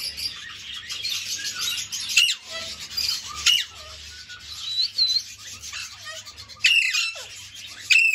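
Alexandrine parakeet screeching loudly, several sharp calls that drop in pitch, with raspy chatter and a couple of short whistles between them: contact calling for an absent owner, which the owner takes as the bird shouting angrily for 'papa'.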